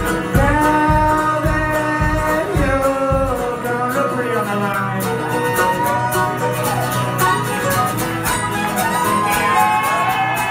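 Live country-bluegrass band playing: a fiddle carries long, sliding melody notes over banjo and acoustic guitar. A steady drum beat runs for the first three and a half seconds, then drops out.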